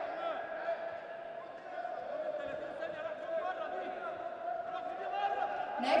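Indistinct voices echoing in a large sports hall over a steady hum, with a public-address announcer starting to speak right at the end.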